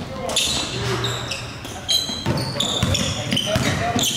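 Basketballs bouncing on a hardwood gym floor, mixed with many short, high sneaker squeaks and the echo of a large gym.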